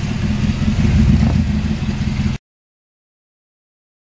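Pickup truck engine running at low speed, picking up a little about a second in. The sound cuts off abruptly a little past halfway through.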